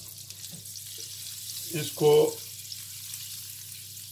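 Margarine melting and sizzling in a hot ridged grill pan: a steady, light crackling sizzle as the fat bubbles.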